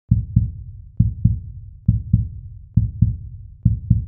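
Heartbeat sound: a steady double thump, lub-dub, repeated five times at a little under one beat a second, deep and muffled.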